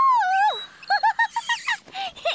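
Cartoon songbird call: one long whistle that rises and falls in pitch, then a quick run of short chirps.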